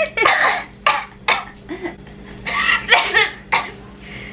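A young woman's pained reaction to hot sauce burning her lips: short breathy hisses and sharp breaths, cough-like bursts, and strained wordless vocal sounds.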